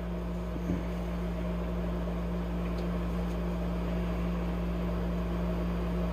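Danby window air conditioner running with a steady hum and a rush of blowing air, putting out cold air.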